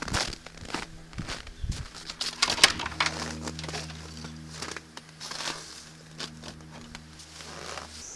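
Footsteps crunching on snow, then knocks and clatter as a wooden shed door is opened and handled, the loudest knock about two and a half seconds in. A steady low hum comes in about three seconds in.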